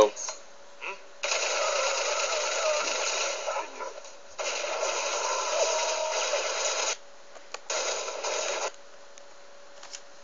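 Film soundtrack, mostly speech, playing from a screen's speakers and picked up by a phone. It comes in three stretches that start and stop abruptly, about a second in, about halfway through and near the end, with a faint hum between them.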